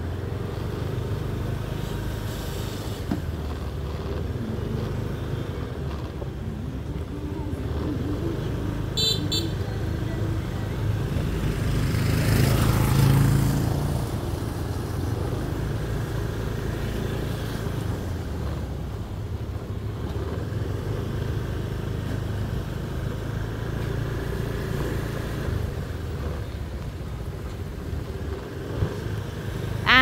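Street traffic of motorbikes and cars, a steady low rumble. One vehicle passes close and loud about twelve to fourteen seconds in, and a horn toots briefly around nine seconds.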